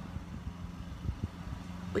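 Steady low motor hum, with a voice starting a word at the very end.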